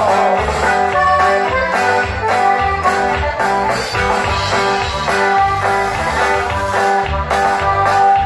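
A live band plays an instrumental passage: accordion and guitar melody with held notes over a steady bass and drum beat.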